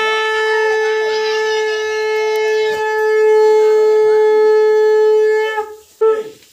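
A conch shell (shankha) blown in one long, steady, loud note with voices faintly behind it; the note stops about five and a half seconds in.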